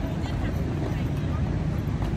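Steady low rumble of outdoor background noise, with faint chatter of passers-by.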